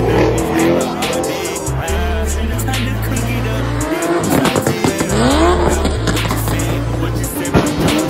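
A car doing burnouts and donuts: the engine revs up and down and the tyres squeal. About four to five seconds in, the revs climb sharply in pitch. Loud bass-heavy music plays underneath.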